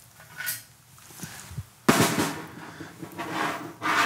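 Snare drum with one sharp hit about two seconds in that rings on, with lighter clicks and rattles before it as a plastic skeleton foot model is handled on the drum head.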